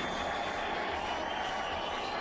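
Steady din of an arena concert crowd between songs, a continuous rumbling roar heard through an audience camcorder's microphone.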